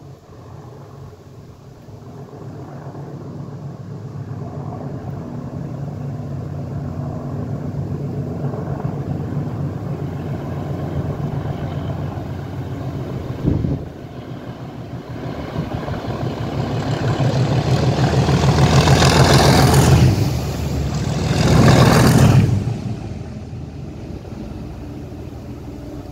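Class 37 diesel locomotives with English Electric V12 engines hauling a railhead treatment train. The engine drone builds steadily as the train approaches, is loudest in two peaks as it passes close by about three-quarters of the way through, then fades. A brief thump comes about halfway through.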